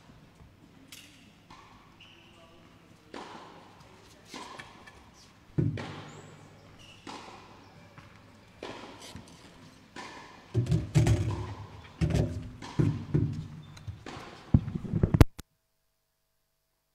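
Scattered sharp knocks and thuds of tennis balls bouncing and being struck on a hard court, about one a second at first, then a dense run of heavier thuds near the end before the sound cuts out abruptly.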